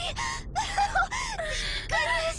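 A woman's voice making short, high-pitched, breathy vocal sounds in quick succession: emotional gasps and cries rather than clear words.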